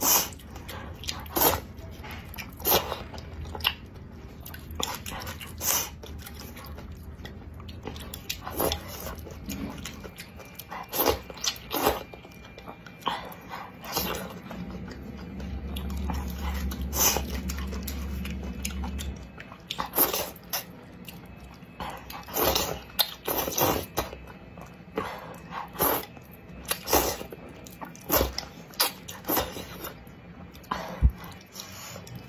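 Close-up eating sounds of wide flat noodles in soup: chewing and biting, with frequent short, wet mouth clicks and smacks at an uneven pace.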